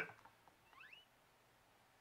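Near silence, broken by one faint, brief rising squeak just under a second in.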